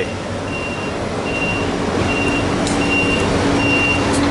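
A vehicle's backup alarm beeping steadily, a high beep a little more than once a second, over a steady engine rumble; a low hum joins about halfway through.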